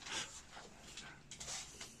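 Short hand broom sweeping a floor along the base of a wall: a few faint, scratchy bristle swishes.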